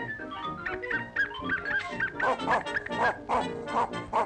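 Band music from an early-1930s cartoon soundtrack, with a cartoon dog yapping over it: a quick run of short barks, about three a second, through the second half.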